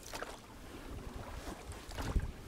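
Wind buffeting the microphone in a low, steady rumble, with a faint wash of choppy water around a small inflatable boat.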